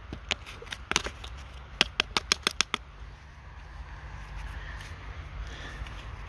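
Dry, clumpy soil crackling and clicking under a gloved hand as a small dirt-crusted find is picked out of it: about a dozen sharp clicks in the first three seconds, then only a faint low steady hum.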